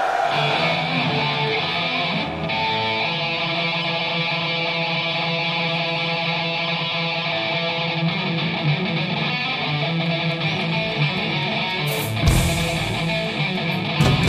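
A heavy metal band plays live. A distorted electric guitar plays a song's opening riff with held notes, and drums with cymbal crashes come in about twelve seconds in.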